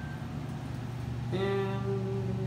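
A steady low hum in an elevator. About two-thirds of the way in, a loud, steady held tone with many overtones joins it.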